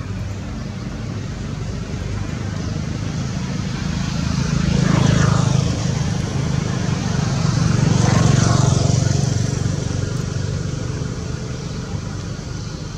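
Motor vehicles passing twice, one after the other, each growing louder and then falling away, over a steady low engine hum.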